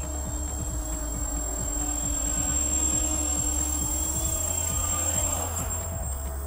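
Background music over the whine of a small quadcopter's electric motors as it flies in and comes down to land, the motor tone easing off near the end.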